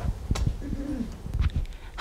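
A faint, low off-microphone voice murmuring briefly about halfway through, with a soft click and a few low knocks around it.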